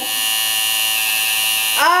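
Tattoo machine buzzing steadily as the needle works the linework into the skin of the arm. A pained 'ow' cry starts near the end.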